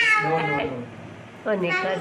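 Voices singing a Hindi devotional bhajan. A high-pitched voice ends a falling note in the first half second, and after a short quieter gap a lower voice starts the next line about one and a half seconds in.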